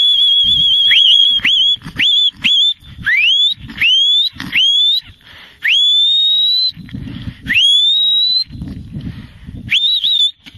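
A handler's herding whistle giving commands to working border collies: a long held note, then a run of short whistles that each sweep upward in pitch, several longer rising whistles in the middle, and one more near the end.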